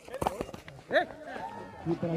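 A few sharp knocks about a quarter second in, then several distant voices of cricket players and onlookers shouting out as the delivery is played.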